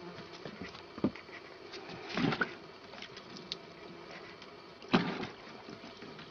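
Water splashing in a plastic bucket as a cat paws at fish in it: a few separate splashes and knocks, the loudest about five seconds in.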